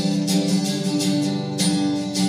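Acoustic guitar strumming chords in a steady rhythm, part of a live indie song.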